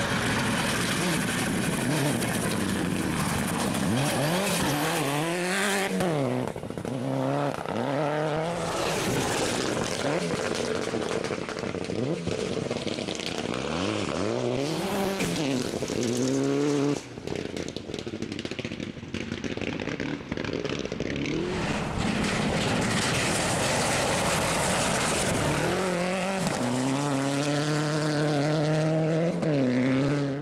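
Rally cars at full throttle on a gravel stage, their engines revving up and dropping back again and again through gear changes as they pass, over the hiss of tyres and thrown gravel. The level drops briefly about halfway through, then the engine sound builds again near the end.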